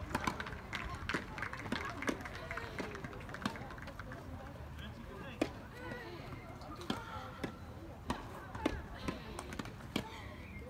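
Tennis ball struck by rackets in a rally, sharp pops every second or two, the loudest about five and a half seconds in and near the end, over steady background talk from people around the court.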